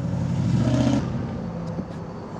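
A road vehicle's engine passing on the street, loudest from about half a second to a second in and then easing off.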